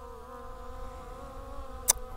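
Skydio 2 quadcopter's propellers buzzing steadily with a slightly wavering pitch as the drone returns, about 100 feet out. A brief sharp click near the end.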